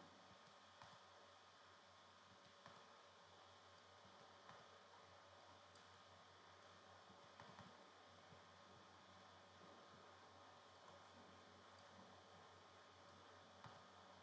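Near silence: room tone with a faint steady hiss and low hum, and a few faint, scattered clicks.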